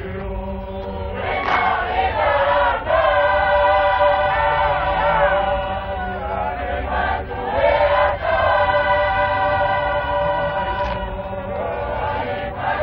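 Many voices singing together in a Tongan lakalaka, holding long chanted lines in phrases with brief breaks about three and seven seconds in.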